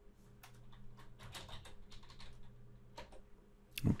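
Typing on a computer keyboard: a scattered run of light key clicks over a faint steady hum.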